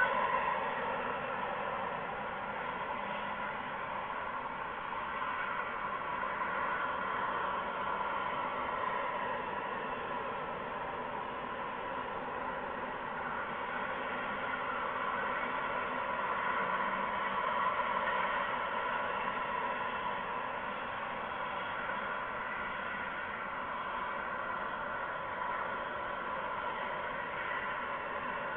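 Steady background hiss with several faint steady high tones running through it and no distinct sounds standing out.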